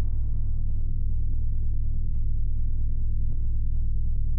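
Logo intro sound design: a loud, deep, steady rumbling drone with a faint high steady tone above it, its upper rumble fading away over the first couple of seconds.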